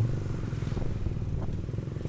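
Motorcycle engine running steadily at low speed, heard from the rider's seat as an even low drone.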